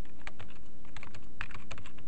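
Typing on a computer keyboard: irregular keystroke clicks, several a second, over a steady low hum.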